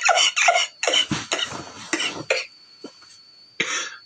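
A man coughing: a run of harsh coughs over the first two and a half seconds, then one more short cough near the end.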